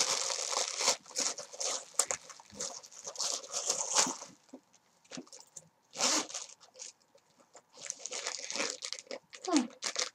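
Plastic packaging crinkling and crackling in irregular bursts as it is unwrapped by hand, with pauses between handfuls.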